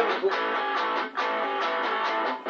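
Electric guitar, a Stratocaster-style solid body, strummed on an A7 chord in repeated strokes, with a brief break a little past the middle.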